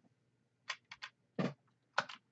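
A few irregular keystrokes on a computer keyboard, faint and sharp, with the clearest near the end.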